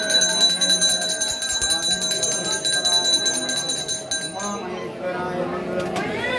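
Brass temple bell rung rapidly and continuously, a fast run of strikes with a steady ring, stopping about four and a half seconds in, over the voices of a crowd.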